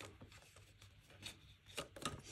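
Faint rustling and a few soft taps and clicks of paper divider cards and plastic binder sleeves being handled and turned, a little louder near the end.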